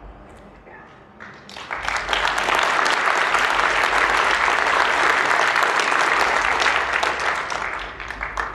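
Audience applause: many people clapping, swelling in about a second and a half in, holding steady, then dying away near the end.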